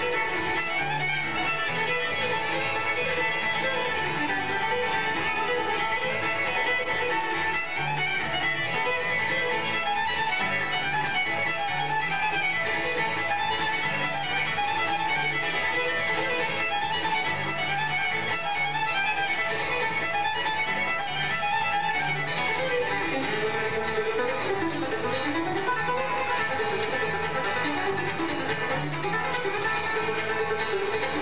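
Live acoustic bluegrass band playing an instrumental fiddle tune, the fiddle to the fore over mandolin, two flat-top acoustic guitars and upright bass.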